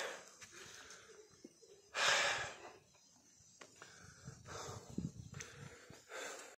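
A hiker breathing hard close to the microphone: one loud breath out about two seconds in, and a softer breath near the end.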